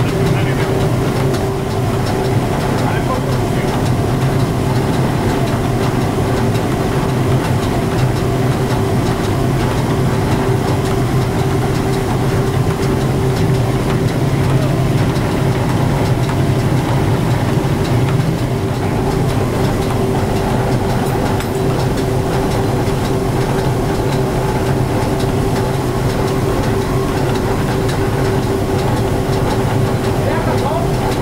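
Machinery of a working electric grain mill running steadily: the roller mills and other milling machines make a constant loud drone with a steady low hum and a higher hum above it.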